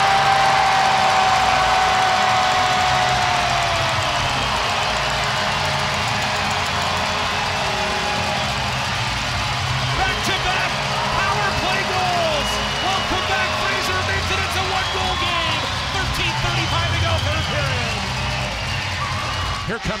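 Arena goal horn sounding one long steady tone over a cheering crowd, falling in pitch as it winds down about four seconds in. After that, crowd cheering continues with arena music.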